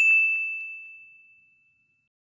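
A single high, bell-like ding that rings one clear tone and fades away over about a second: a logo chime sound effect.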